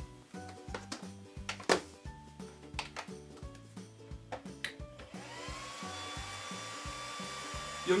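A few sharp clicks, then about five seconds in the cooling fans of an Innosilicon A4+ LTCMaster litecoin miner spin up at power-on: a rising whine that levels off into a steady tone over a rush of air. Background music plays throughout.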